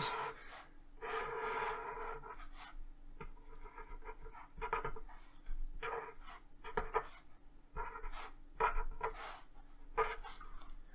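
Marker pen drawing lines on paper: a series of short, irregular scratchy strokes, some with a faint squeak, as a triangle, a dashed altitude and a right-angle mark are drawn.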